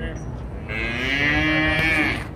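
A single long moo from one of the cattle, starting about two-thirds of a second in and lasting well over a second.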